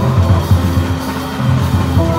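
Jazz organ trio playing swing live: Hammond-style organ, archtop electric guitar and drum kit. The organ's held chord stops at the start and a new chord comes in at the end, while low bass notes and drums keep going in between.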